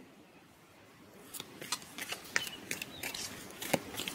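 A tarot deck being handled: a string of light card clicks and snaps, starting about a second in, with the sharpest snap near the end.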